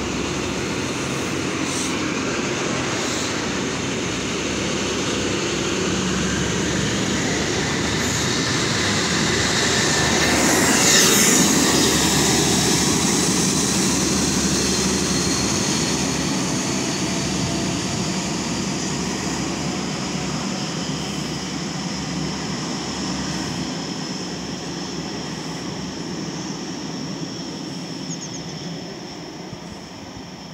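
Class 43 HST diesel train departing: coaches rumbling past on the rails, growing louder to a peak about eleven seconds in as the rear power car goes by. It then fades as the train draws away, with a high whine lingering.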